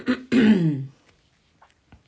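A woman clearing her throat once, a short rasping sound that falls in pitch, about half a second in; she has a head cold.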